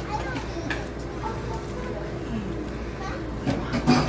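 Background chatter of several people talking at once in a busy diner, indistinct voices with no single speaker in front.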